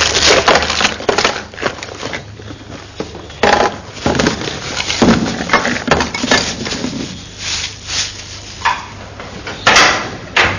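Personal belongings being handled and packed into a bag: irregular rustling, knocking and clatter of small objects, with a sharper knock near the end.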